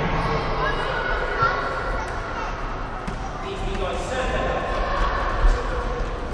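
Children's voices calling and chattering in an echoing sports hall, with a ball thumping twice, about a second and a half in and near the end.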